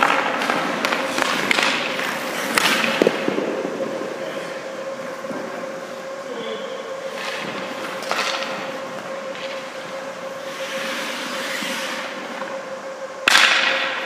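Hockey goalie's skate blades scraping and carving the ice in short sweeps as he shuffles and pushes across the crease, with a louder scrape near the end, over a faint steady hum.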